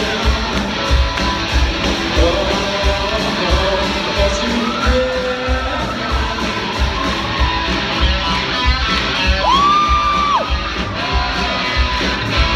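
Small rock band playing live: electric guitars over drums with a steady kick-drum beat, a melodic guitar or vocal line rising and falling on top.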